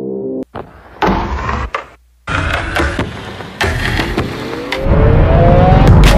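Intro music cuts off sharply, followed by a choppy run of short clicks and bursts of noise. Then a motorcycle engine accelerates, its pitch rising steadily, and a loud low rumble of engine and wind sets in near the end.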